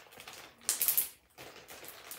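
Clear plastic bag crinkling in the hands, with a louder burst of crinkling just under a second in.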